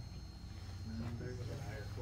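Faint, indistinct men's voices talking in the background over a low, steady hum; no gunshot.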